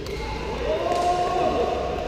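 A player's long, drawn-out shout in a large, echoing sports hall, with the sharp smack of a sepak takraw ball being kicked about a second in.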